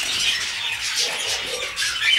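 Cage birds, canaries and small parrots, chirping and twittering in a dense run of short, high-pitched calls.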